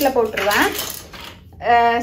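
Plastic toy building blocks clattering as a child rummages through a basket full of them, the clatter dying away over about a second and a half.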